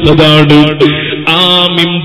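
A man's voice chanting a melodic religious recitation in long held, gliding notes, over a steady low hum.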